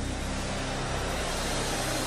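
A large congregation praying aloud all at once, their many voices blending into a steady, even wash of sound with no single voice standing out.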